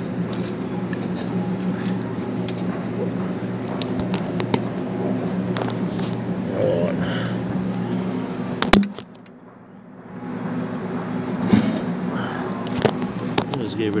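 Small metal clicks and scrapes from locking pliers twisting a Screaming Eagle muffler baffle loose inside the exhaust tip, over a steady low hum. A sharp click near the middle is followed by a brief drop in sound.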